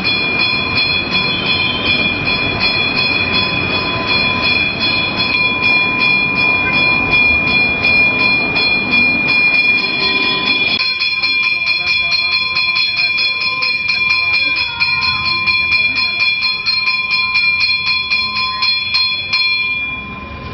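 Temple bell ringing continuously at the aarti lamp offering, struck in rapid, even strokes so its ring is held the whole time. A low rumble underneath drops away about halfway through.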